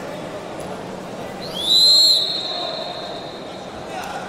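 Referee's whistle blown once, stopping the wrestling, about one and a half seconds in. It slides up into a steady shrill tone that is loudest for about half a second, then trails off more softly towards the end, over steady hall noise.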